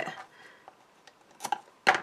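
Two short crisp clicks from card stock and double-sided craft tape being handled, about half a second apart near the end, the second louder.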